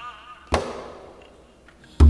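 A single sharp percussion strike from a Korean traditional (gugak) ensemble, about half a second in, ringing on in the hall's reverberation. It comes in a pause between phrases, just after a wavering sustained instrumental tone fades out.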